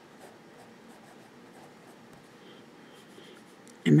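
Noodler's Tripletail fountain pen nib writing on lined paper: a faint, continuous scratching in short strokes as letters are written.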